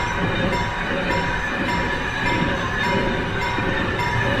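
Freight train of container wagons rolling past a level crossing, a steady rumble of wheels on rail. Over it the crossing's warning bell rings in a regular repeating pattern.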